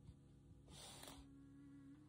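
Near silence: a faint steady hum, with a soft brush of a hand across tarot cards about a second in.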